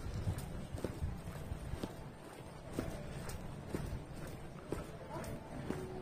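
Footsteps on a polished hard floor, shoes clicking at an unhurried walking pace, over a steady low background rumble.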